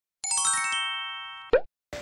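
Editing transition sound effect: a quick descending run of bell-like chime notes that ring on together and fade, cut off about one and a half seconds in by a single short plop.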